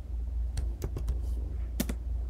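Computer keyboard keystrokes: a few quick key clicks between about half a second and a second in, then a close pair of clicks near the end, over a steady low hum.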